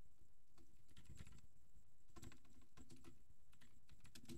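Keys on a computer keyboard being typed, faint, in two short runs of keystrokes: the first about half a second in, the second a little after two seconds.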